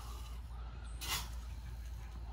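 Chick starter feed poured from a small scoop into a glass feeder jar: one brief soft hissing rattle about a second in, over a low steady background hum.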